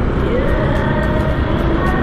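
Motor scooter riding in traffic: a steady, loud low rumble of engine and wind noise, with faint steady tones over it.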